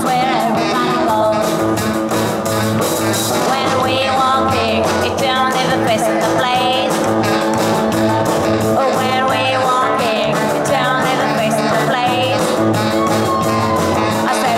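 Live sixties-style garage rock band playing: a woman singing over electric guitar, upright bass, drums and saxophone, with a steady walking bass line and busy cymbals.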